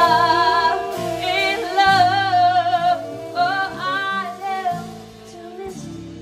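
Female jazz vocalist singing a slow ballad with instrumental accompaniment, holding long notes with a wide vibrato before the voice dies away about five seconds in.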